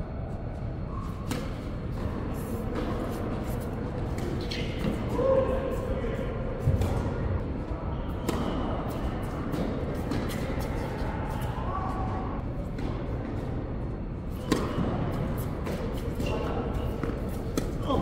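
Tennis balls struck by racquets and bouncing on an indoor hard court during a rally: sharp pops every second or so, ringing in a large hall.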